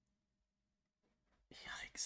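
Near silence for about a second and a half, then a man's breathy, whisper-like voice comes in near the end as he starts to speak.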